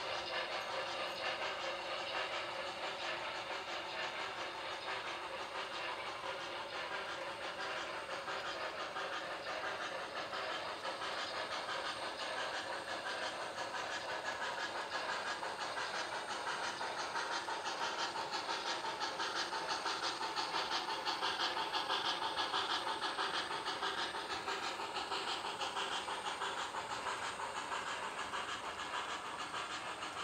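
HO scale model freight train with a steam locomotive running across the layout: a steady hiss with a fast, fine clicking texture, growing a little louder past the middle.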